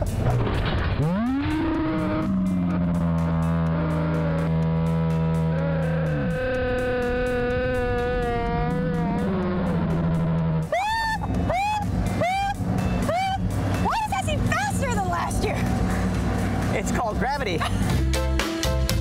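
Riders' screams and voices slowed down for a slow-motion replay: deep, drawn-out held cries that waver in pitch. About ten seconds in, they give way to a string of shorter rising-and-falling cries roughly half a second apart.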